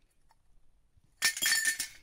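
Scrap steel square tubes clattering against steel hoops on the ground: a short burst of metallic clinking and rattling about a second in, lasting under a second.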